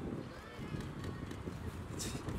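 Indistinct voices of photographers calling out, faint under steady street noise.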